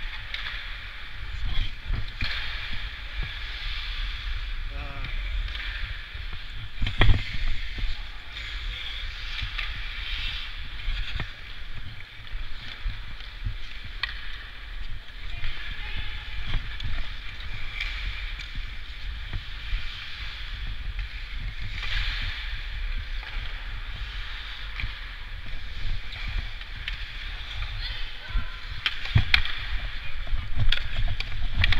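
Ice hockey skates scraping and gliding on rink ice, with a steady rumble of wind on the microphone from skating speed. Scattered stick clicks and one sharp loud knock about seven seconds in.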